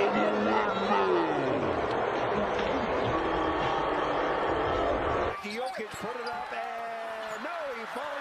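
Basketball game broadcast audio: loud arena crowd noise under a commentator's voice, cutting off abruptly about five seconds in to quieter court sound with voices and short knocks.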